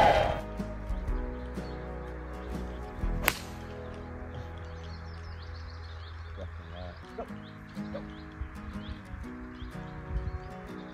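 A golf club striking the ball on a par-3 tee shot: one sharp click about three seconds in, over steady background music.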